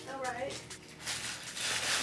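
A brief, faint voice just after the start, then quiet room sound with a few faint light ticks.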